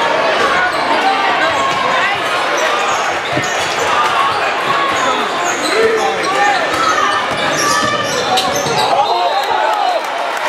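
Basketball game in a large gym: many spectators' voices shouting and calling over one another, with a basketball being dribbled on the hardwood court.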